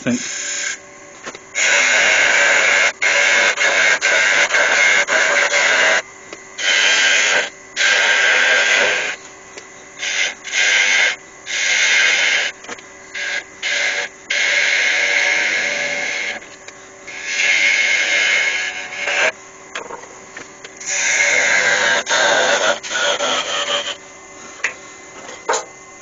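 A gouge cutting a small spindle of pale wood spinning on a lathe, in repeated cutting passes of one or two seconds with short pauses between, under the lathe's steady hum. The piece is being shaped into a teardrop form.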